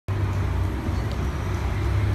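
Steady low rumble of city road traffic, starting abruptly.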